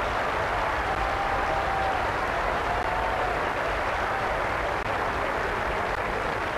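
Audience applauding steadily, with faint voices mixed into the clapping.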